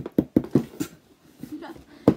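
A woman laughing in short, quick bursts, about five a second, with excitement, loudest in the first second.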